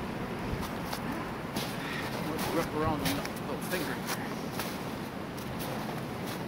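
Faint, unclear voices over steady outdoor background noise, with a short voiced phrase about two and a half seconds in and a few sharp clicks scattered through.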